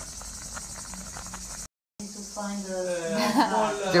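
Fish soup boiling in a pot, a steady fizzing with fine crackling pops from the bubbles, which cuts off abruptly a little under two seconds in. A woman's voice follows and grows louder toward the end.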